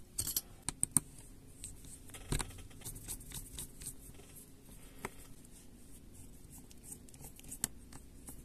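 Faint clicks and scrapes of a small precision screwdriver taking the screws out of a Xiaomi Redmi 9T's inner cover, with a few sharper clicks in the first second and single clicks scattered later.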